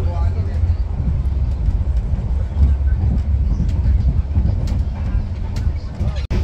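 Steady low rumble of a moving passenger train, heard from inside the carriage.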